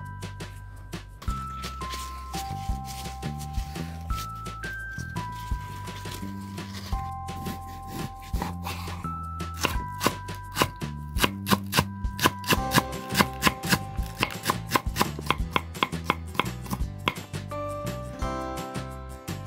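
Kitchen knife chopping a green onion (Korean daepa) on a wooden cutting board: scattered cuts early on, then a quick, even run of chops through the second half, over background music.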